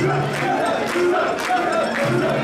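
Mikoshi bearers chanting in unison as they carry a large portable shrine, many men's voices in short, repeated shouts about twice a second.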